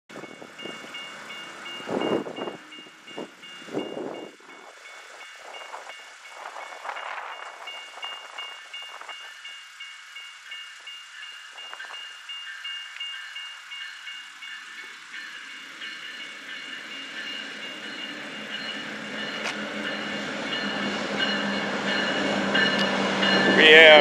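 Amtrak GE P42DC diesel locomotive approaching to stop at a station, its engine rumble growing steadily louder over the second half and loudest near the end as it pulls alongside. Steady ringing from grade-crossing warning bells runs throughout.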